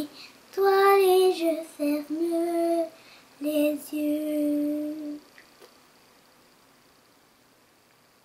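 A young girl singing unaccompanied in French, the closing phrases of a children's song, ending on a long held low note about five seconds in. Faint room hiss follows.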